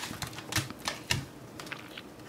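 Tarot cards being pulled from the deck and laid down: a scattering of light, irregular clicks and taps of card stock.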